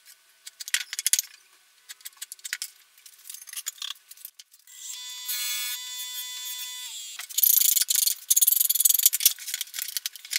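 Hand tools working the wooden neck tenon on a workbench: light clicks and taps, then a steady whine for about two seconds that dips in pitch as it stops, then loud, rough rasping strokes as the end of the tenon is shaped.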